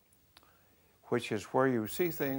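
A brief near-silent pause with one faint click, then a man's voice starts speaking about a second in.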